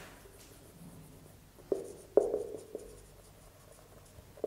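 Marker pen writing on a whiteboard: faint strokes and light squeaks as a word is written, with two sharper knocks against the board about two seconds in.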